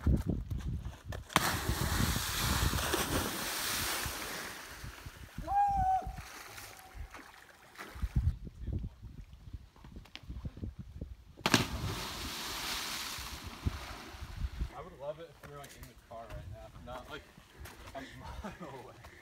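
Two cliff jumpers hitting the water far below: a sharp slap of water entry about a second and a half in, with the spray hissing away over the next two seconds, and a second such splash about two-thirds of the way through. A short whooping cheer follows the first splash, and voices come in near the end.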